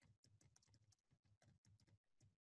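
Faint computer keyboard typing: a quick, steady run of keystrokes as a line of code is typed.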